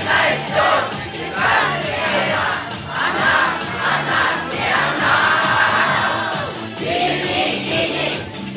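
A karaoke backing track with a steady beat, and a large group of children singing along together.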